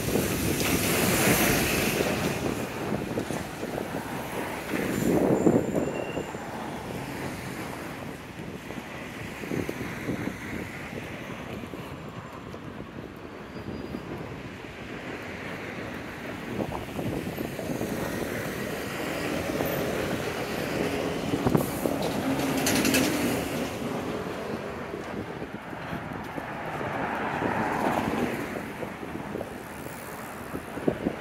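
Busy city street ambience, with road traffic passing now and then, each vehicle rising and fading over a steady background noise.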